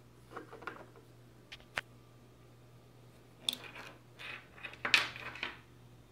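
Handling noise from jumper wires and a USB cable being moved and plugged in on a wooden table: scattered short clicks and scrapes, the loudest about five seconds in, over a faint steady low hum.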